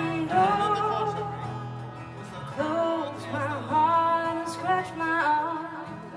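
Live acoustic band music: a woman singing long, bending held notes over acoustic guitar.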